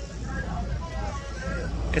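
Busy street background: a steady low traffic rumble with faint voices of people talking nearby.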